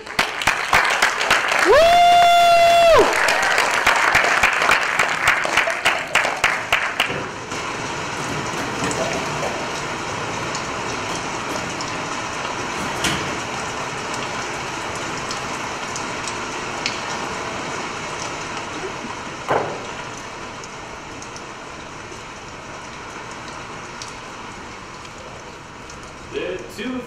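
Theatre audience applauding, with one high whoop about two seconds in; the clapping dies away after about seven seconds. A steady recorded rain sound effect then fills the hall, slowly fading, with a single knock near the end.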